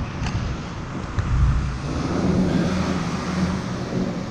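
City street traffic: a motor vehicle passes close by, its low engine drone building about a second in and holding steady, with wind on the microphone.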